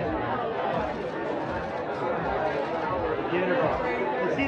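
Overlapping chatter of many voices at once, a steady hubbub of photographers and bystanders with no single voice clear.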